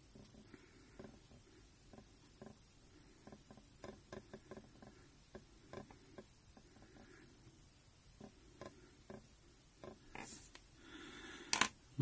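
Faint scratching and small irregular ticks of a fine-tip pen writing a signature on a reed waggler float, then a sharper click near the end as the pen is set down on the desk.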